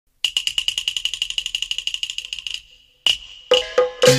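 A small high-pitched metal percussion instrument struck in a fast roll of about a dozen ringing strokes a second for some two seconds. It then stops, and a few single strikes follow near the end.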